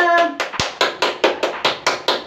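Hands clapping quickly and evenly, about seven claps a second, in a small tiled bathroom, following a cheer.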